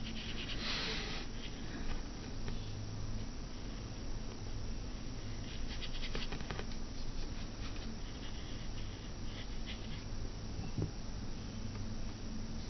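Faint, soft scratching of a watercolour paintbrush stroking paint onto paper, in short irregular strokes over a steady low hum.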